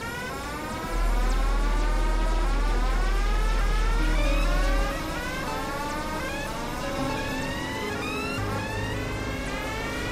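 Experimental electronic synthesizer music: overlapping tones that keep sweeping upward in pitch, a new sweep about every half second, over a deep bass drone that comes in loud about a second in and drops back to a softer hum near the middle.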